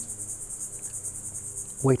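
Insects, likely crickets, trilling steadily at a high pitch, the trill pulsing rapidly, with a faint low hum underneath.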